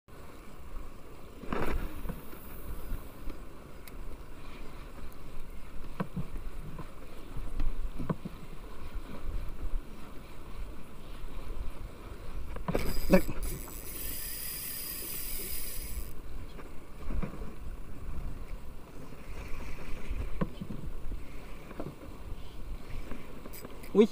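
Wind buffeting the microphone over choppy sea water, with a few sharp knocks and a short hiss about fourteen seconds in.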